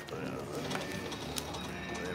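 Video slot machine spinning its reels, playing steady electronic tones with a few light clicks, over low background chatter.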